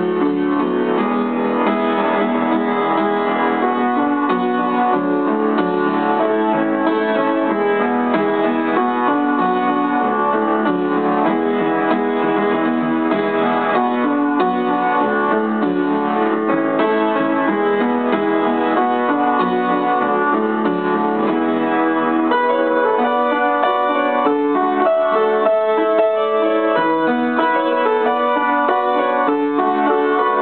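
Schirmer upright piano being played with both hands: a continuous flow of chords and melody with no pauses.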